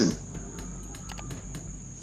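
Crickets trilling steadily in the background: one high, even tone over a faint hiss.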